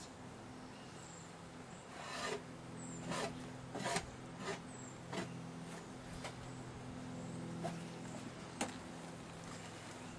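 Steady low hum of a colony of honey bees on open hive frames. Irregular scraping and rubbing strokes come over it, the clearest about two, three, four, five and eight and a half seconds in.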